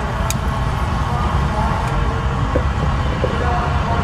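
Steady roar of a propane-fired glass furnace's burner and blower.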